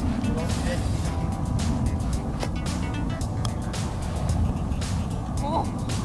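Steady wind rumble on the microphone, with faint background music.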